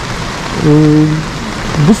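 Steady rushing noise of the fast-flowing Svirka river in its concrete channel. About half a second in, a man holds a hesitant 'uh' for well over half a second.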